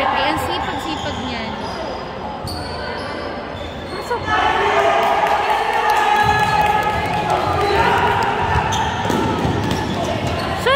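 A basketball dribbling and sneakers squeaking on an indoor court as players run the floor, with voices calling out in the echoing hall.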